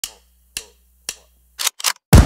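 Sharp, dry percussive hits from a logo intro's sound track: three single hits about half a second apart, then two quicker hits close together near the end, building toward an electronic music opening.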